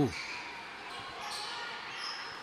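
Steady, fairly quiet game noise of live basketball play in a large gymnasium: general court and crowd sound with no single sound standing out.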